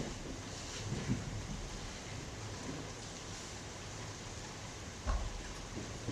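Steady hiss of room tone in a pause between voices, with a faint short sound about a second in and another near the end.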